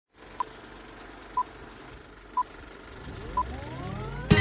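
Intro of a pop song: four short, high electronic beeps evenly spaced a second apart over a faint low hum. Near the end a rising pitch sweep builds toward the start of the music.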